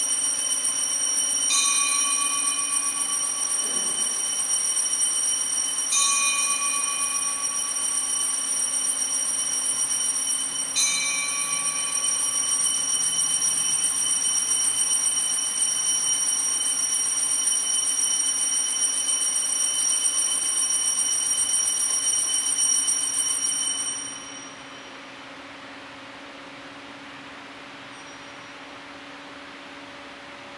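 Altar bells rung at the elevation during the consecration of a Catholic Mass. A continuous high, shimmering ringing carries three stronger strikes about five seconds apart and stops about 24 seconds in.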